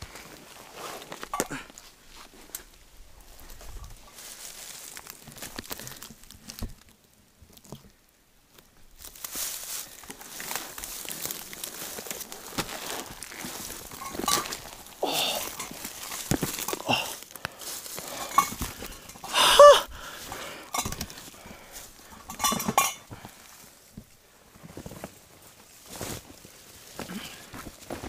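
Footsteps on a rough forest trail and the rustle of packs and brush as hikers climb with heavy loads, with scattered clinks of gear. About two-thirds of the way through comes a short, loud voice sound, and a smaller one follows soon after.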